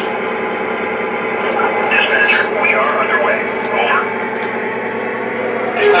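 Sound system of a Lionel Burlington F3 diesel model locomotive playing its diesel engine sound, running steadily after the dispatcher start-up call, with a voice briefly heard about two to four seconds in.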